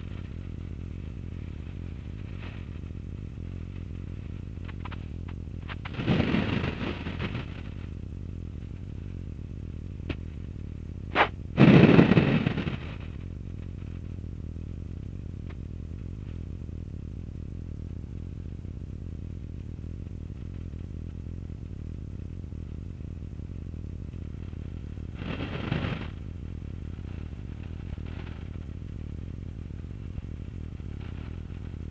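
Steady low drone of a light aircraft's engine and airflow heard inside the cockpit. Three short bursts of crackly noise break in, the loudest a little after a sharp click near the middle.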